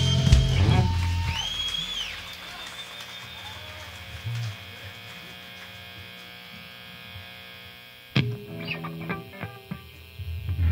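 Rock band ending a song on a final chord and crash that ring out and fade over a couple of seconds, leaving the steady hum of the guitar and bass amplifiers. About eight seconds in, an electric guitar is picked a note at a time, as in tuning between songs.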